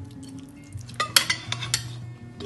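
A metal spoon stirring a soft mashed-egg filling in a plate, scraping and clinking against it, with several sharp clinks in quick succession from about a second in.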